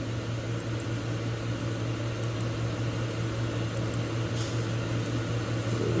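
Steady low hum and hiss of background machinery running, with a faint tick about four and a half seconds in.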